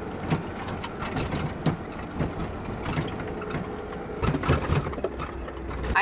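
Car interior on an unpaved gravel road: a steady rumble of tyres on gravel with a dense run of clicks and rattles from stones and the shaking cabin, growing louder for a moment about four seconds in.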